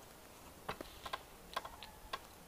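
A handful of light, irregular clicks and taps, closely spaced in small clusters, over faint background hiss.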